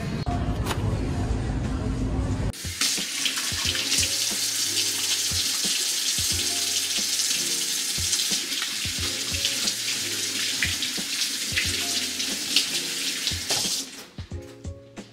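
Kitchen faucet running into a stainless steel sink as hands are rubbed and rinsed under the stream; the water stops just before the end. It starts after a cut from a couple of seconds of low rumble, and background music with a steady beat plays throughout.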